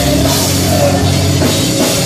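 Pop-punk band playing live at full volume, with the drum kit driving the song, heard through a camera phone's microphone in the crowd.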